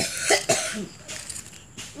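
A person's voice making a few short, breathy bursts in the first second, then it goes quieter.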